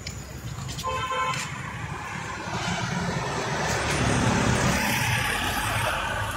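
Street traffic: a vehicle horn gives a short toot about a second in, then the noise of passing traffic grows louder toward the end.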